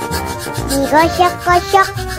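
Toothbrush scrubbing sound effect, quick back-and-forth strokes, over a children's brushing song with a sung melody and a steady beat about twice a second.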